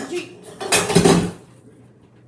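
Empty cans and a plastic water bottle knocked over, clattering in one loud crash that lasts about half a second, a little before the middle.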